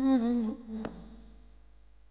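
A woman's voice holding a hummed or sung note, wavering slightly in pitch, that ends about half a second in. A fainter trailing tone and a soft click follow just before one second.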